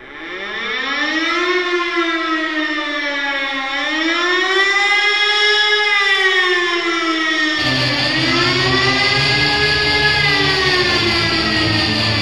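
A siren-like wail opening an industrial goth rock track: a stack of tones that fades in, then rises and falls slowly in long swells. About two-thirds of the way through, a low, heavy layer joins beneath it.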